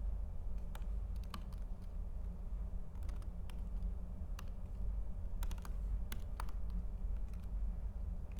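Computer keyboard being typed on in short, irregular runs of key clicks, over a steady low hum.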